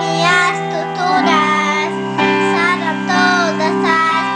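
A young boy singing a Portuguese-language song over a recorded backing track of sustained chords, his voice gliding through held phrases with short breaks between them.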